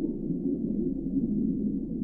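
A low, steady, muffled drone with nothing above the low range and no beat or clicks, a background bed of the soundtrack.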